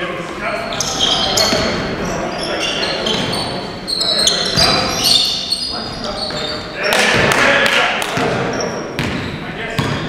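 Basketball game in a gym: sneakers squeaking on the hardwood floor, the ball bouncing and players' voices calling out, all echoing in the hall. There is a louder burst of noise about seven seconds in, just after a shot goes up.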